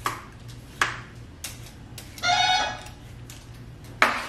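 Apartment door buzzer sounding once for about half a second, a single buzzing tone a little over two seconds in. Before it, a few light clicks and scrapes of a vegetable peeler working a potato.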